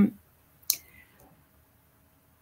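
A single short, sharp click about two-thirds of a second in, after a spoken word trails off.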